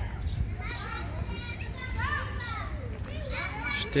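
Children's voices calling and shouting as they play, high and rising and falling in pitch, over a steady low rumble.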